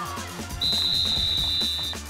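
Background music with a steady beat, over which a referee's whistle gives one long, high-pitched blast starting about half a second in, blowing the play dead after the tackle.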